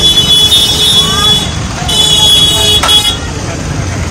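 Street traffic with vehicle engines running, and a high-pitched steady tone sounding twice: once for about a second and a half, then again for about a second near the middle.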